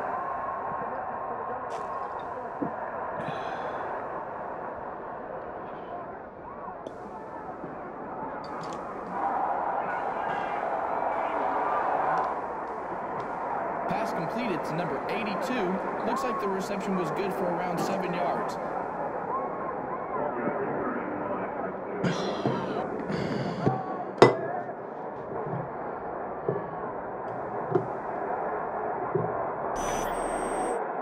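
A football game on TV: stadium crowd noise with indistinct commentary, sounding thin and muffled as through a television speaker. A few sharp clinks and knocks cut through, a cluster midway and another later, the loudest a single sharp knock.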